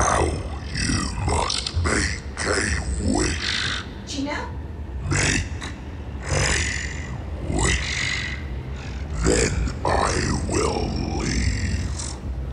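A voice speaking in short, unintelligible bursts over a steady low rumble.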